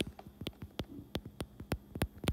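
Stylus tapping and stroking on an iPad's glass screen while handwriting a word, a string of light sharp clicks about three a second.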